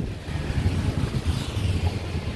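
Wind buffeting the microphone outdoors: an uneven low rumble that rises and falls.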